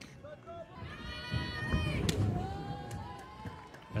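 Softball stadium crowd noise with a long high-pitched call from a voice about a second in, and a single sharp smack a little after two seconds.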